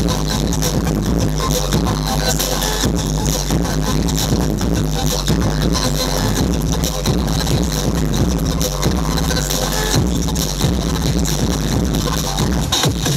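Loud breakbeat electronic dance music from a live DJ set, with a steady heavy bass and a continuous beat, heard over a club sound system.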